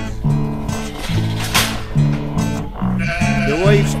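Acoustic guitar strumming a steady, country-style backing between sung verses, with sheep bleating over it, including a wavering bleat in the last second.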